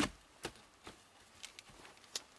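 Wetterlings Backcountry Axe chopping into a knotty log: one sharp knock right at the start, then a few faint knocks and taps. The knotty round holds together and does not split.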